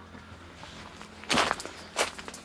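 Footsteps on a dirt and gravel path: one loud crunching step about a second and a half in and another at the very end, over a low steady background.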